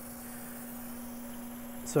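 L160 hydrogen generator running with its torches lit, set at maximum production: a steady hum under an even hiss.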